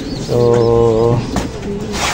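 Racing pigeons cooing in their loft cages, a low steady cooing under a man's long drawn-out "so".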